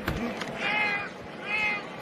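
Two drawn-out, high-pitched yells from the field as the ball is snapped, with a short knock right at the start.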